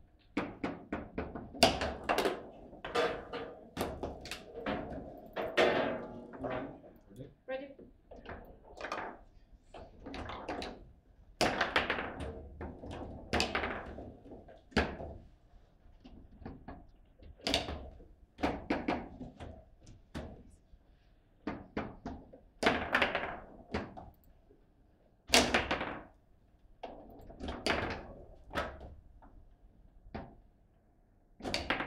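Table football in play: the hard ball struck by the plastic player figures and banging off the table walls, with the steel rods knocking against their stops, in an irregular string of sharp knocks and thunks with short pauses between rallies.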